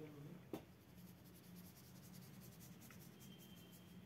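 Faint, quick repeated strokes of a watercolour brush dabbing and scratching against paper, with a single tap about half a second in.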